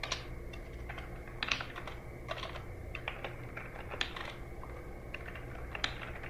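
Typing on a computer keyboard: irregular keystrokes, a few of them louder, over a steady low hum.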